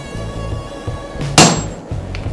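A sledgehammer blow on a top fuller, driving into a red-hot steel hammer head on the anvil: one sharp, loud strike about one and a half seconds in. Before it, metallic ringing from the previous blow fades out. Background music plays throughout.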